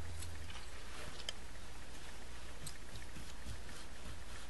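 A few faint, light clicks and scrapes of a craft knife cutting through polymer clay, over a steady low hum.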